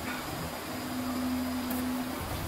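Steady rush of air from a powder-coating spray booth as the electrostatic powder gun sprays fan parts, with a steady hum underneath that grows stronger in the second half.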